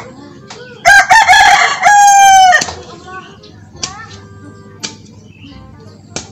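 A rooster crowing loudly about a second in: a few short broken notes, then one long held note that drops away at the end. Later, two sharp knocks about a second apart from a hoe striking the ground.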